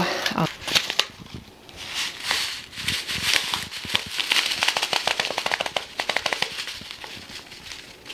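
A small folded paper seed envelope being unfolded and handled, crinkling and rustling in a long run of small crackles; near the end, onion seeds are tipped from it into a palm.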